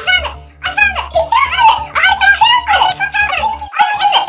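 A high-pitched, sped-up cartoon-style voice giggling in quick bursts over background music.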